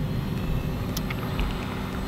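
Blade 70 S micro RC helicopter in low flight, its small electric motor and rotor giving a faint steady whine over a steady low rumble.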